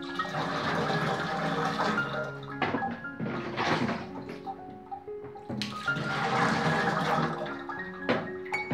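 Water poured from a bucket rushing and splashing into a metal tub through a slotted basket, in a spell of about two seconds at the start and another about six seconds in, over background music.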